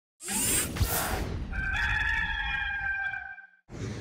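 A whoosh, then a rooster crowing: one long, held call of about two seconds, played as a sound effect in an animated team-logo intro.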